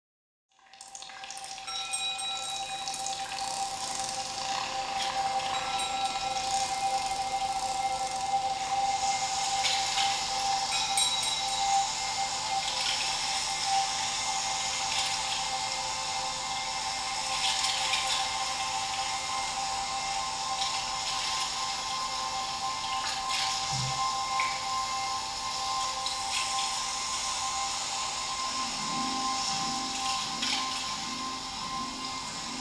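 Experimental electro-acoustic improvisation: a sustained, slowly shifting wash of hissing noise with steady held tones, fading in over the first second or so. Near the end a low wavering sound enters beneath it.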